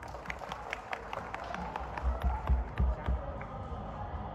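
Scattered audience clapping, individual claps heard irregularly, as the song dies away, with a few low thumps near the middle.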